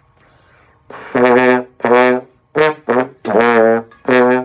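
Trombone playing a short phrase of five detached notes after a quick breath, the slide reaching between far sixth position and the closer third and first positions. The long reaches out to sixth position are the tricky part of this passage.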